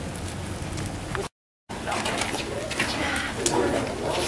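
Outdoor street ambience with faint voices, broken by a moment of dead silence at an edit about a second in; after it, a low cooing bird call is heard near the end.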